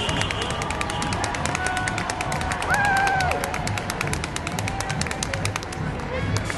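Street parade din: music with a fast, steady clicking beat, with crowd voices and a drawn-out pitched call that falls away about three seconds in.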